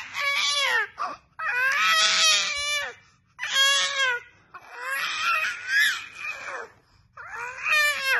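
A baby letting out a run of loud, high-pitched cry-like wails, about five of them, each lasting a second or so with short breaks between.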